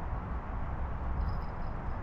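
Steady outdoor background noise with a low rumble and no distinct events, with a faint thin high tone about halfway through.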